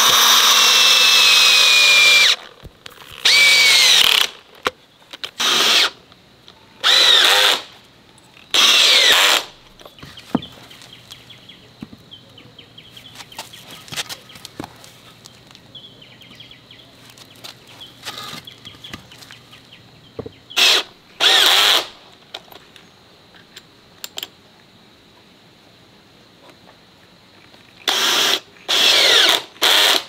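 Cordless drill driving long screws into wooden post caps in repeated runs: one long run at the start with the motor pitch sinking as the screw bites, then several short runs of about a second each. A quieter stretch in the middle holds only light knocks, before more short runs near the end.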